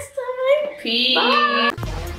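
Women's voices in a drawn-out, sing-song tone, cut off suddenly near the end as outro music with a beat starts.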